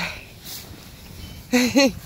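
A short wordless voice sound near the end, two quick rising-and-falling notes, over a quiet background.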